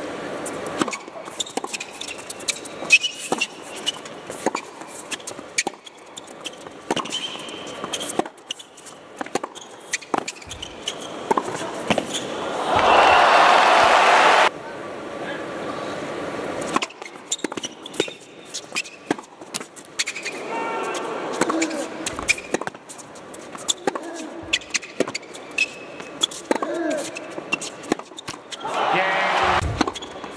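Tennis rallies: a ball struck by rackets and bouncing on a hard court, a string of short sharp hits. About twelve and a half seconds in, a burst of crowd applause lasts two seconds and cuts off suddenly.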